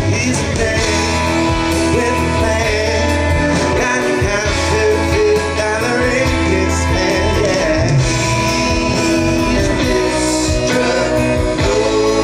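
Live band music from an amplified stage band of drums, bass, electric guitar, fiddle and keyboards playing a steady groove, with a lead voice over it.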